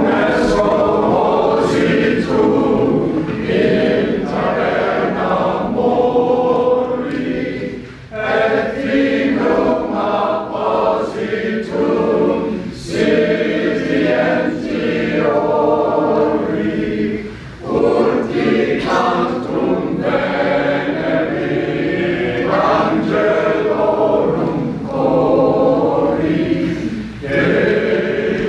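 A choir singing, in long sung phrases with brief breaks between them about every nine seconds.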